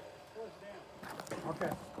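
A man's voice speaking a few short words, with some faint clicks or knocks in the second half.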